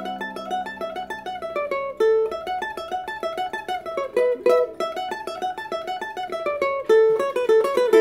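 Low-G Klos carbon-fibre ukulele picking a fast old-time fiddle-tune melody in quick single notes, with a fuller strummed chord near the end.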